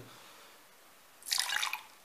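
A short splash of water poured into a glass, about a second in, after a quiet start.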